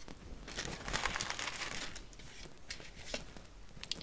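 Cardstock and paper rustling as sheets are handled and moved, loudest from about half a second to two seconds in, with a few light taps, then softer.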